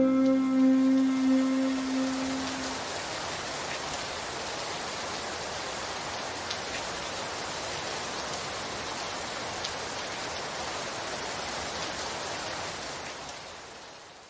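The last held notes of a song fade away in the first couple of seconds, leaving a steady, even hiss with a faint tick or two that fades out near the end.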